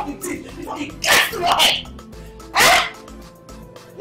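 A woman crying out in distress, in two loud, sharp outbursts about a second in and after two and a half seconds, over soft sustained background music.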